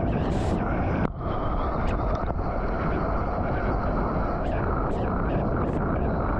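Seawater rushing and churning around a surfer's action camera held just above the waterline, with wind noise on the microphone and short spatters of spray every second or so.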